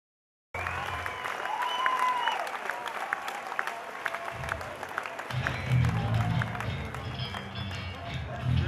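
Audience clapping at a live rock gig as the band starts a song, with a pulsing bass line coming in about halfway through.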